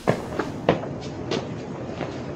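Footsteps on a hard path: a string of sharp steps, the louder ones about every half second with fainter steps between.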